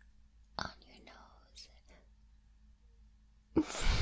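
Soft close-up whispering and small mouth sounds, then, about three and a half seconds in, a sudden loud rush of noise right on the microphone.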